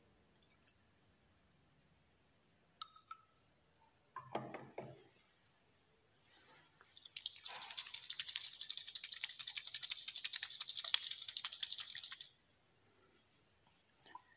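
Glass test tube of cupric chloride solution shaken rapidly by hand for about five seconds, a dense fast rattle and slosh of liquid as the crystals dissolve in water. Before it come a couple of light glass clinks and a short splash as water is poured in.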